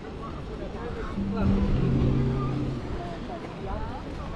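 A motor vehicle's engine hums steadily, loudest in the middle for about a second and a half, over street noise and faint distant voices.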